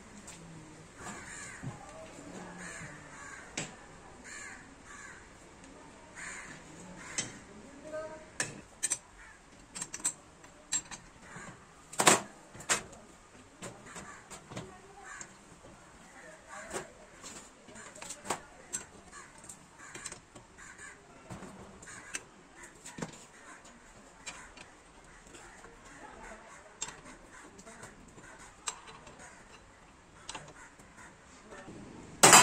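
Irregular metal clicks, knocks and clanks of steel parts being handled and adjusted on a manual sheet-metal bending machine, with one loud clank about twelve seconds in.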